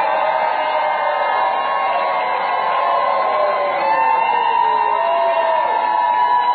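A large crowd of people cheering and shouting together, many voices holding long, overlapping shouts without a break.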